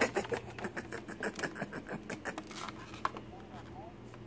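A thin disposable plastic cup crackling as it is squeezed and crumpled in a hand: a quick run of sharp crinkles, loudest at first and thinning out after about three seconds.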